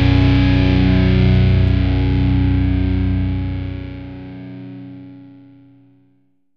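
The closing distorted electric guitar chord of an alternative hard rock song, held and left ringing out. It fades away over the last few seconds, the lowest notes dropping out first, until it dies to silence.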